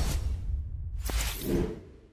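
Whooshing sound effects of a news channel's logo outro: a loud whoosh with a deep bass layer, then a second swell about a second in carrying a brief musical tone, fading out near the end.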